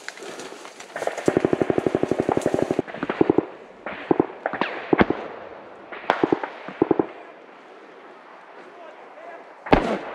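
Gunfire in a firefight: a long rapid automatic burst of about sixteen rounds a second, lasting about a second and a half, then several short bursts and single shots, and one sharp, loud shot close by near the end.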